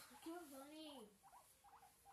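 A person's voice making soft wordless pitched sounds: one drawn-out note that wavers and then falls in pitch about a second in, followed by a few short squeaky chirps.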